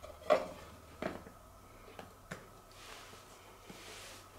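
Handling noise from a small hard object turned over in the hands: a handful of sharp clicks and knocks, the loudest about a third of a second in, with a brief soft rustle near three seconds.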